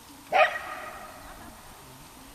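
A dog barks once, loud and sudden, about a third of a second in, the call trailing off over the next second.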